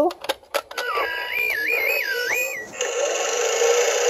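A few clicks as the North Pole Communicator toy's button is pressed, then its small speaker plays a short tone that steps up and down, followed by a steady whirring sewing-machine sound effect.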